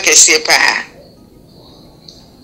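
A man's voice speaking briefly in the first second, then a faint steady high-pitched hum.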